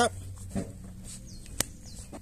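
Gloved hands handling a plastic sewer-hose wash cap on the hose end, with one sharp plastic click about one and a half seconds in, over a low steady hum.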